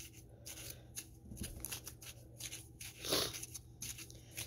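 Faint scraping and rustling as a wooden popsicle stick pushes a damp baking-soda-and-conditioner mixture down through a plastic bottle funnel into a balloon, with a brief louder sound about three seconds in.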